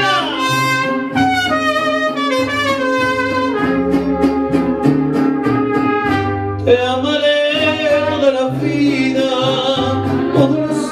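Mariachi band playing a slow love song, with trumpets carrying the melody over a bass line that steps from note to note. The arrangement changes to a new passage near seven seconds.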